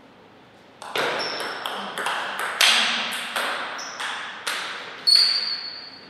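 A table tennis rally: about nine quick, sharp ball strikes, bat hits and table bounces alternating roughly every half second, each with a short high ping. The rally starts about a second in, and the last hit, just after five seconds, rings on the longest.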